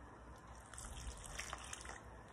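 Milk pouring from a glass measuring cup into a bowl of flour and cottage cheese dough, heard as a faint pouring trickle while a hand works the mixture.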